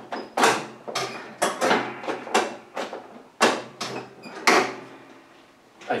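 Repeated metal clacks and rattles from a Husqvarna hydrostatic lawn tractor's brake pedal and parking-brake lever being worked over and over, about two a second, going quieter about five seconds in. The parking-brake mechanism is not catching: it is messed up, with one part of the linkage disconnected.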